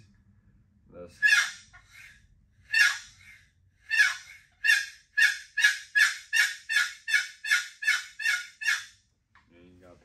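Wooden turkey box call worked by sliding its paddle lid across the box's edge, yelping like a hen turkey. Two separate notes come first, then a run of about a dozen quick yelps at two to three a second.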